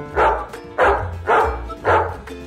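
A dog barking four times, about half a second apart, over background piano music.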